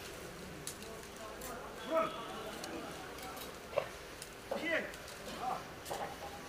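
Bamboo arrows clicking and rattling as they are pulled out of a straw archery target and gathered into bundles, with sharp light clicks scattered throughout. A few short voice calls come in from about two seconds in.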